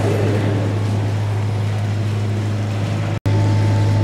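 A steady low hum under a noisy hiss, with a brief dropout to silence just past three seconds.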